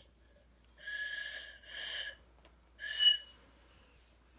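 Cheap plastic party-favor whistle blown three times, each blow mostly a breathy rush of air with only a faint thin tone, the last briefly catching a sharper squeak. The whistle barely sounds: it doesn't work the way it should.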